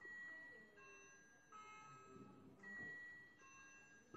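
Faint electronic school-bell chime: a short melody of several held notes one after another, ringing to signal the start of class.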